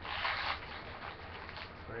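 Foil wrapper of a trading-card pack crinkling as it is torn open by hand: a loud short rip at the start, then softer crinkling.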